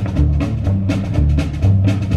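Live rockabilly trio in an instrumental break: upright bass and drums keeping a steady beat under electric guitar, with no singing.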